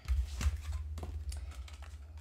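Clear plastic case and paper being handled on a table: light rustling with a few sharp clicks and taps, and a low bump near the start.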